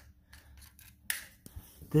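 Quiet handling of a metal carbide lamp: one short scraping rasp about a second in, then a small click.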